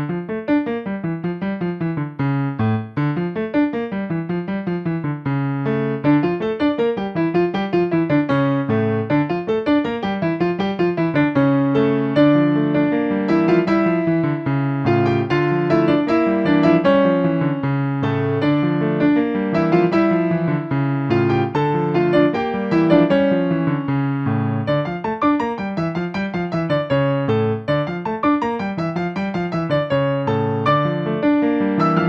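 Solo Yamaha digital piano playing a brisk piece with a Latin and Baroque touch: a steady stream of fast notes over a bass figure that repeats about once a second.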